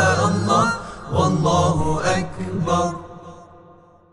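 Devotional intro chant: a solo voice sings long, wavering melismatic phrases over a steady low drone, and fades out in the last second.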